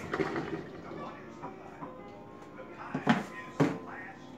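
Soft background music with brief snatches of voice, as from a television playing in the room.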